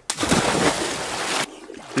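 A man jumping off a sailboat into a lake: one loud splash of water lasting about a second and a half that cuts off suddenly.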